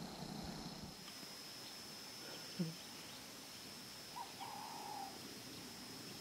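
Quiet outdoor ambience with a thin, steady high-pitched tone, and a short faint bird call in two parts about four seconds in.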